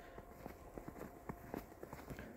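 Faint footsteps walking through snow: a series of soft, irregular steps.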